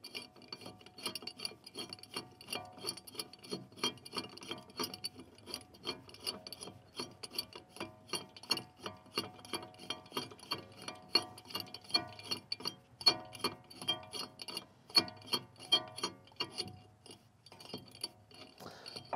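Threaded rod of an Astro Pneumatic 78620 ball joint puller being turned down by hand onto a ball joint stud: steel threads and collar ticking and rubbing in a quick, fairly even run of clicks, about four or five a second.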